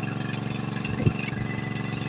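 Fishing launch's inboard engine idling with a steady, even chugging, and a single light knock about a second in.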